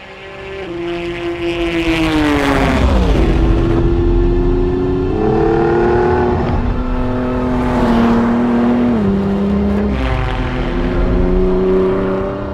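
Ford GT Heritage Edition's twin-turbo V6 at speed: the car passes by with its engine note falling sharply about two to three seconds in, then a steady high engine note that steps in pitch a couple of times.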